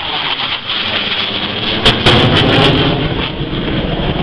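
Military jet aircraft flying past overhead, its engine noise loud and steady, growing louder about two seconds in with a few brief crackles.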